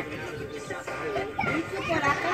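Young children's voices and chatter over music playing in the background.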